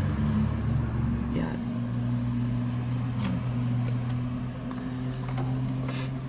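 Steady low hum of an idling vehicle engine heard inside the cab, with a deeper rumble under it that drops away about a second and a half in. A few faint clicks sound over it.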